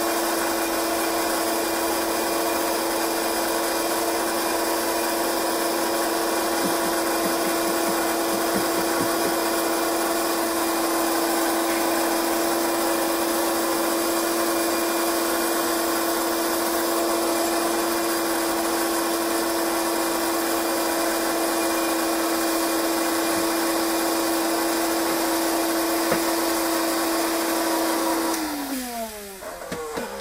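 Vacuum cleaner motor powering a vacuum seeder, running at a steady pitch, then switched off near the end, its pitch falling as it winds down.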